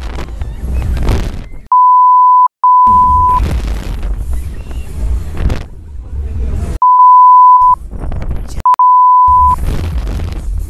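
Four censor bleeps, each a single steady tone lasting under a second, with all other sound cut out beneath them: two about two seconds in and two more near the end. Between the bleeps, loud rumbling wind buffets the microphone as the fairground ride swings.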